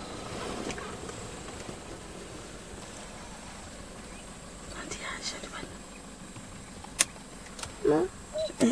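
Steady low rumble of an idling vehicle engine, with faint murmured voices about five seconds in and a single sharp click about a second before the end.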